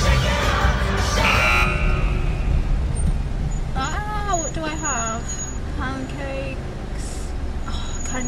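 Loud concert crowd noise and music that cut off sharply under two seconds in, giving way to the low steady rumble of a car idling, heard from inside the cabin. A person's voice comes in briefly a few times in the middle.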